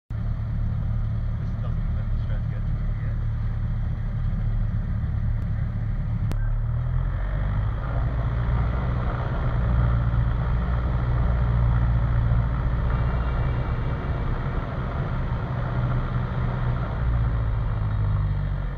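Cessna 172's engine and propeller running on the ground during the pre-takeoff run-up. It runs steadily, is brought up to a higher, louder run-up speed about six to eight seconds in, and is held there for the magneto and carburettor heat checks.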